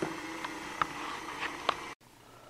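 A hammer striking the head of a steel nail to flatten it: about four short, sharp knocks, unevenly spaced, over a steady shop hum.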